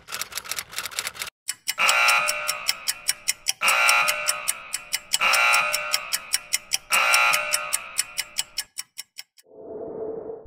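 Channel logo sting: rapid clock-like ticking, with a ringing chime that comes in four times about a second and a half apart. It ends in a short swell near the end.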